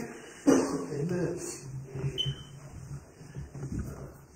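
Low voices from a small congregation, a short voiced sound about half a second in and then a low wavering hum or murmur.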